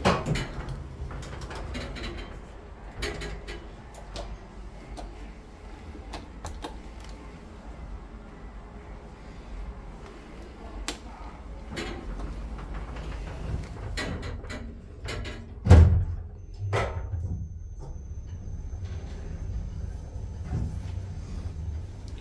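2002 Kone MonoSpace lift heard from inside the car: button clicks and the double-speed sliding doors closing, then a low steady hum as the car travels down one floor, with one loud thump about two-thirds of the way through.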